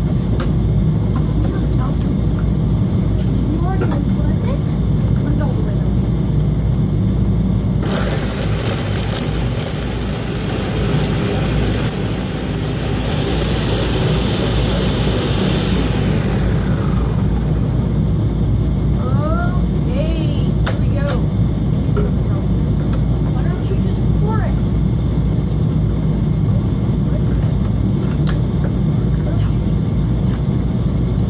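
Countertop blender motor running steadily, then jumping to a louder, harsher high-speed whir about eight seconds in that winds back down over the next several seconds.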